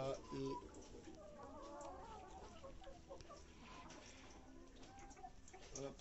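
Tetra laying hens clucking softly, a run of quiet, wavering calls from the flock.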